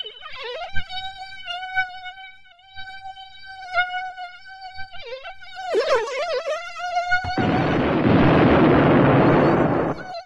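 Mosquito whine sound effect: a steady, high buzz that wavers and dips in pitch twice. About seven seconds in it gives way to a loud hiss lasting nearly three seconds that cuts off at the end.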